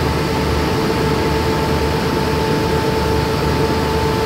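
A stationary diesel passenger train running at the platform: a steady engine and air-conditioning hum with a constant mid-pitched whine.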